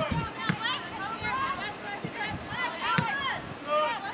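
People talking, several voices in conversation, with a couple of short sharp knocks, one about half a second in and one about three seconds in.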